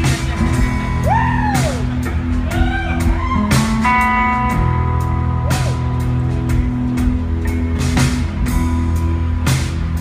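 Live rock band playing an instrumental intro: electric guitars hold sustained notes, some swooping up and back down in pitch, over regular drum hits.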